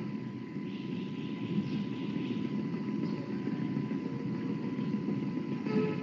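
Steady low rumbling background noise with a faint, thin steady tone running through it: open-microphone line noise on a voice-chat room's audio.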